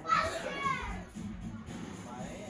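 A child's brief high-pitched yell, about a second long near the start, with children playing in the background.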